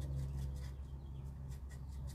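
A small paintbrush dabbing paint onto a raised furniture moulding: faint light ticks and scratches of the bristles, over a steady low hum.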